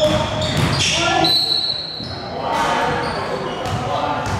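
Sounds of a basketball game on a hardwood gym floor: short high sneaker squeaks, a ball bouncing, and players' voices, all echoing in a large hall.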